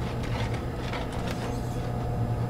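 Homemade scrap-built power hammer running: a steady hum from its salvaged electric motor and belt drive, with the ram making light, irregular taps on the anvil die.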